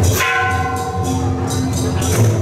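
A single stroke on a bell-like metal percussion instrument just after the start, ringing with several clear tones that fade over about a second and a half, over steady procession music.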